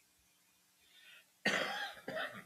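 A person coughing in a quiet room: a faint breath about a second in, then a sudden loud cough about one and a half seconds in that fades over half a second.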